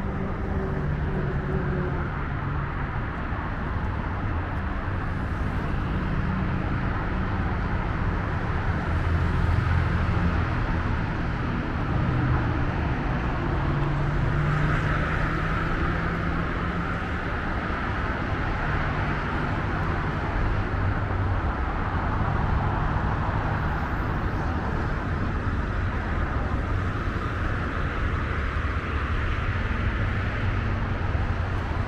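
Steady rush of multi-lane highway traffic: car tyre noise over a low engine hum, swelling a little about halfway through.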